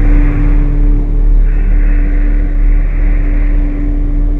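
Dark ambient intro music: a deep, steady rumble under one long held tone, with hissing swells that rise and fade twice.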